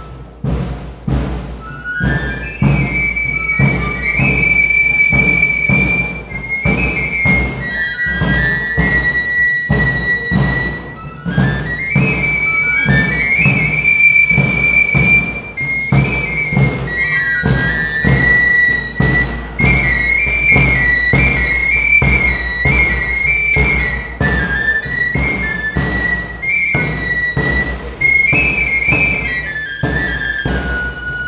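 Tamborileros playing a high melody on three-hole pipes (flauta rociera) over a steady beat on tamboril drums struck with sticks.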